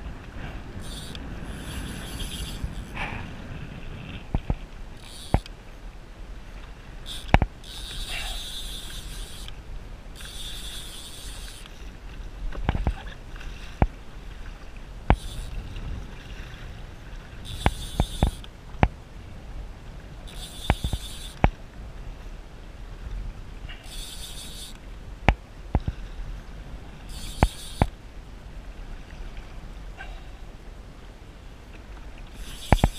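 Choppy seawater slapping and splashing against a plastic kayak hull, with wind rumbling on the microphone. Sharp knocks recur every few seconds, and hissing bursts about a second long come and go throughout.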